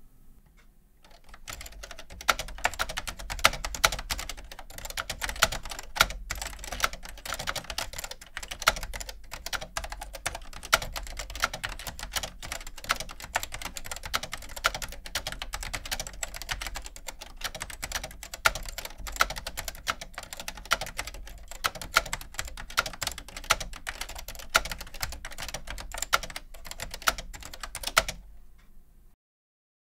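Continuous typing on a Leading Edge 8815K keyboard with Keytek inductive key switches and PBT keycaps: a dense, fast run of keystroke clacks that starts about a second and a half in.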